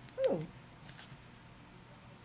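A woman's short 'oh' of sudden confusion, sliding down in pitch, followed by a few faint clicks.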